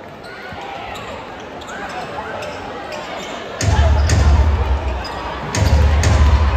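A basketball dribbled on a hardwood arena court over the murmur of a crowd. About three and a half seconds in, loud arena music with a heavy bass beat starts over the sound system and becomes the loudest sound.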